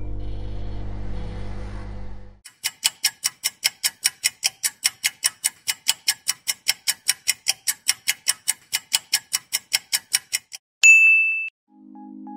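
A low appliance hum for about two seconds, then a kitchen timer ticking evenly about four times a second for some eight seconds before it rings once with a bright ding near the end.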